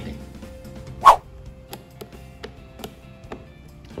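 Handling noise over quiet background music: one sharp knock about a second in, then a few faint clicks, as a flat-blade screwdriver and the camera are brought up to the generator's plastic cover.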